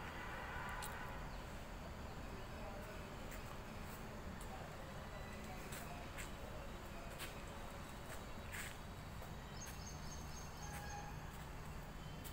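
Faint background ambience: a steady low hum with scattered light clicks and ticks, and faint distant voices near the start.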